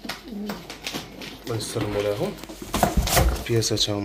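Domestic pigeons cooing, low repeated calls that swell and bend in pitch, inside a cardboard box. A few sharp knocks from the box being handled come about three seconds in.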